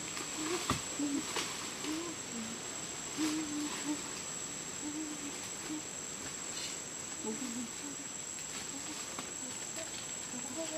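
Tropical forest ambience: a steady, high-pitched insect drone runs throughout, with short low calls or voices now and then and a few sharp cracks in the first four seconds, like twigs snapping underfoot.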